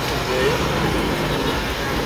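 Steady street background noise with a short, faint voice about half a second in.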